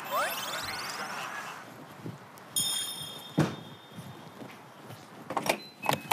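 A rising whoosh, then a short electronic beep from a digital door lock, followed by the knocks and clicks of the lock's latch and the front door being opened.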